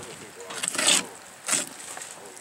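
A knife cutting the backstrap fillet away from an alligator gar's body, making two short scraping, tearing sounds. The louder one comes about a second in.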